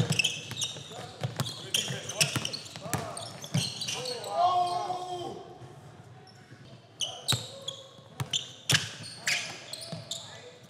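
A basketball being dribbled on a hardwood gym floor, with sneakers squeaking and players' voices calling out. The bouncing drops off and goes quieter around the middle, then picks up again near the end.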